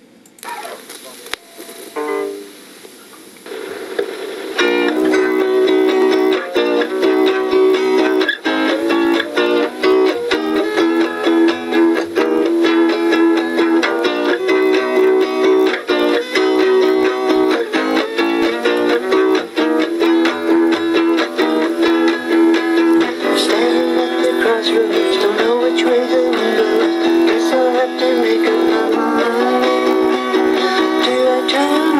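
Solo guitar playing the song's intro in E. A few single notes come first, then from about four seconds in steady strummed chords, each slid up a half step into place (B-flat to B, A-flat to A, E-flat to E).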